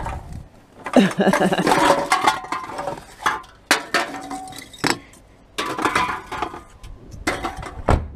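Aluminium drink cans and plastic bottles clinking and clattering as they are pushed into a heap in a car footwell, with a few sharp knocks. A laugh comes early on.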